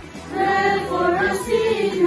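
A crowd of voices chanting a prayer together in unison on held, sing-song notes, with a brief pause for breath at the start.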